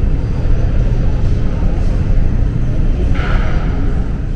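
Steady low rumble, with a short breathy rush of air a little after three seconds in, at a tea-aroma sniffing funnel worked by a rubber squeeze bulb.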